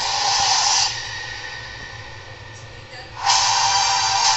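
Film-trailer sound design: a loud hissing rush that fades within the first second, then a second loud rushing hit about three seconds in as the title card comes up.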